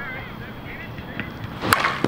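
A single sharp crack about 1.7 seconds in: the 2024 Anarchy Fenrir USSSA slowpitch bat hitting a 52/300 softball, a solid contact that left the bat at about 81 mph.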